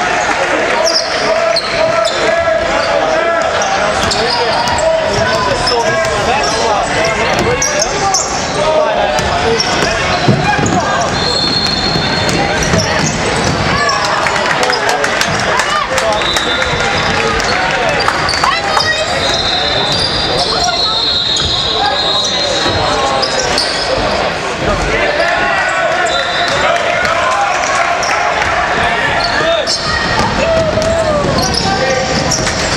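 Basketball being dribbled and bounced on a hardwood court during play, with players and spectators calling out, echoing in a large sports hall.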